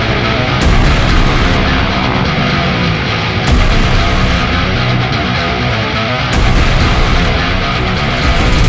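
Loud, hard-driving heavy rock music.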